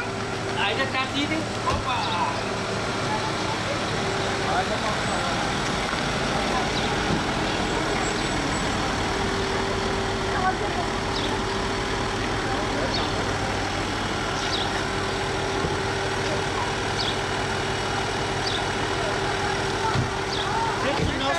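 Car engine running steadily at idle, a constant hum, with voices in the background.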